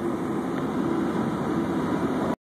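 A car running, heard from inside the cabin: a steady rumble and hiss with a faint hum.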